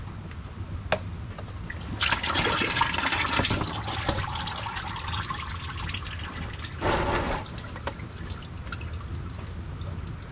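Automatic transmission fluid draining from the valve body into a drain pan as the filter is pulled: a gush starts about two seconds in and eases to a dribble, with a second short splash about seven seconds in.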